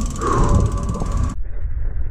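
Mountain bike's rear freewheel hub ticking rapidly as the bike coasts, over tyre rumble on a dirt trail. The ticking cuts off abruptly about two-thirds of the way through, leaving a muffled low rumble.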